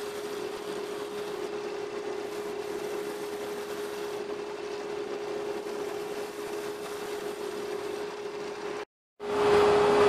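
Harbor Freight 34706 wood lathe spinning a small olivewood bowl while a hand-held turning tool cuts its outside: an even hiss of cutting over a constant hum. The sound breaks off briefly about a second before the end.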